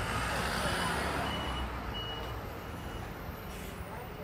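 City bus pulling in to a stop, its engine running amid street noise, with a few short high beeps in the first half.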